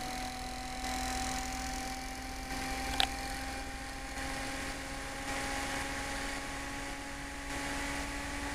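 Bedini motor spinning at speed, its magnetically levitated wheel running without bearings: a steady hum whose pitch creeps slowly upward as it keeps speeding up, over a little wind noise. A single sharp click about three seconds in.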